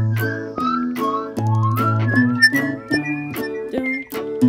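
A whistled melody over strummed acoustic guitar chords, the tune sliding from note to note and climbing higher through the passage.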